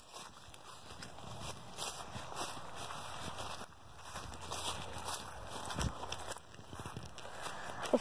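Footsteps walking through outdoor ground cover, an irregular soft crunching, with the rub and knock of a hand-held phone.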